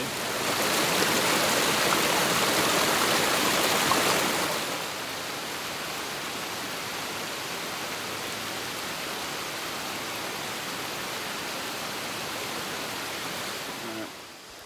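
Rushing water of a creek and small cascading waterfall running high after days of rain: louder for the first four seconds or so, then a steadier, softer rush.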